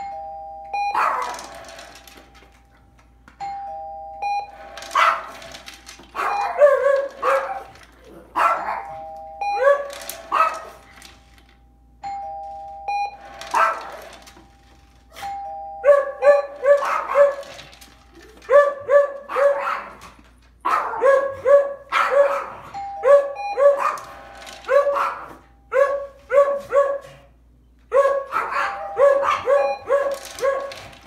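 Two-tone ding-dong doorbell chime, a high note then a lower one, rung several times, with two dogs barking in answer. The barking starts a few seconds in and turns into quick runs of several barks from about halfway through.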